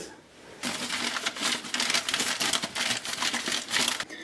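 The inside of a removed plastic sink P-trap being scrubbed out by hand: a rapid, continuous crinkly scraping that starts about half a second in and runs until just before the end.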